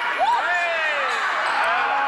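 Basketball game sounds: shoes squeaking on the court in several short squeals during the first second and a half, with a ball bouncing and a crowd murmuring in the hall.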